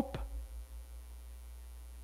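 Steady low electrical mains hum, with no other sound through the pause.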